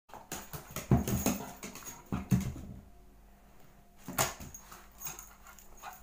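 A terrier playing with a rubber ball on a wooden floor, making short bursts of dog noise about one second, two seconds and four seconds in, among knocks and clatter.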